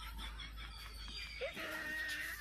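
Chickens calling faintly in the background, with one long, steady call starting near the end.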